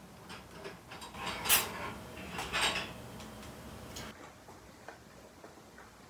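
Metal jar lifter clinking and knocking against glass canning jars and the enamelware canner as a quart jar is lifted out of the hot water bath and moved. The loudest clink comes about one and a half seconds in and another about a second later, with a few lighter clicks after.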